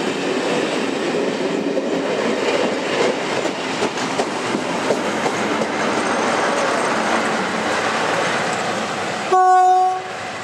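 Passenger coaches rolling past with wheel clatter, then near the end one short blast on the horn of the trailing Class 47 diesel locomotive, a single steady tone and the loudest sound.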